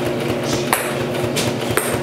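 Brother electric sewing machine stitching through soft felt: a rapid, even run of needle strokes over the motor's hum, with a few sharper clicks.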